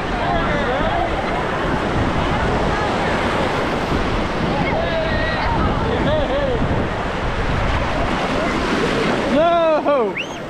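Ocean surf washing and breaking around the legs in shallow water, a steady rushing, with wind on the microphone.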